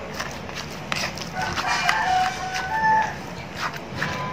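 Pestle knocking and mashing young tamarind in a clay mortar, with a few sharp knocks. From about a second and a half in to about three seconds, a rooster crows, and that call is the loudest sound.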